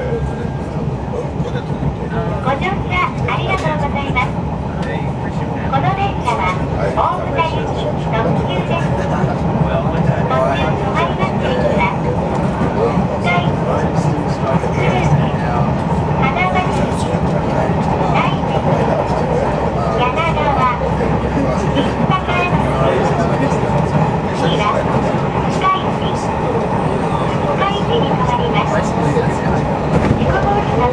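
A train running along the track, heard from inside the carriage as a steady low rumble, with people talking over it throughout.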